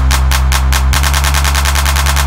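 Electronic dance instrumental karaoke backing track without vocals, with a deep sustained bass and rapid drum hits that double in speed about halfway through, like a build-up.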